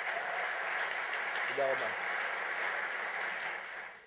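Audience applauding steadily, dying away near the end, with a brief voice heard through it about one and a half seconds in.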